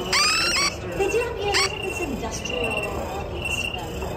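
Analog electronic bird and cricket sounds from circuit-board sculptures whose songs are made by op-amp and flip-flop circuits. A fast trill of short falling chirps comes at the start and another chirp about a second and a half in, while a high, steady cricket-like chirp comes and goes.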